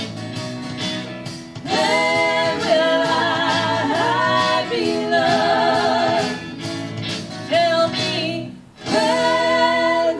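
Female vocal trio singing long held notes in close harmony, with vibrato, over instrumental backing in a 60s girl-group style. The sound dips briefly near the end, then the voices come back in.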